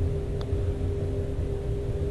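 Steady machinery hum with a constant mid-pitched tone over a low rumble, and one faint click about half a second in.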